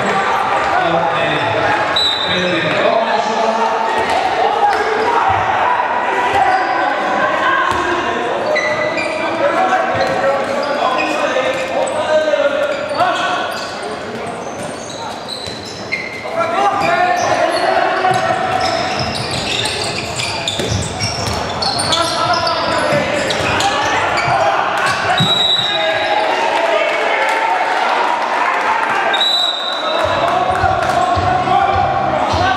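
Handball bouncing and smacking on the wooden court of an echoing sports hall, with voices talking and calling throughout; the sound dips for a couple of seconds about halfway through.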